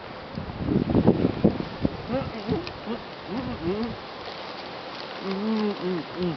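Muffled, closed-mouth humming and mumbling ('mm-hmm' sounds) from a person with a mouth packed full of marshmallows, in several short hums that rise and fall in pitch. There is a louder, rougher burst about a second in.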